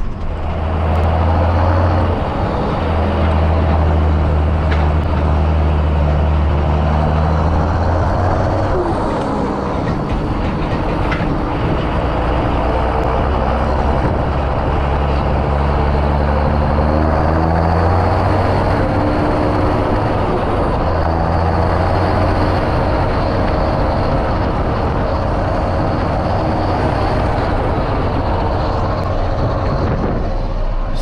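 A John Deere tractor's diesel engine running under way, heard from inside the cab. It has an uneven croaking note that the owner blames on worn-out regenerated Denso injectors, made worse after the engine's power was raised. The engine note dips about nine seconds in and climbs back a few seconds later.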